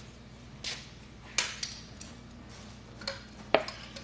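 About six short, hard plastic clicks and knocks, unevenly spaced, from three-quarter-inch PVC pipe and fittings being handled and pushed together while dry-fitting a condensate drain line. The sharpest knock comes a little past three and a half seconds in.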